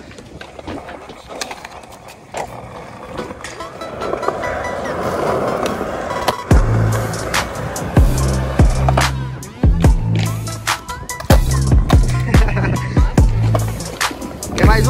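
Skateboard rolling, with a few sharp clacks of the board, in the first half. About six and a half seconds in, a hip-hop beat starts, with heavy bass notes and sharp drum hits.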